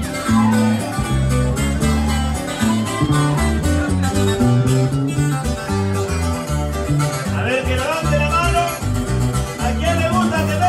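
Norteño group playing live in an instrumental passage: plucked requinto and guitar lines over a bouncing bass line of separate notes.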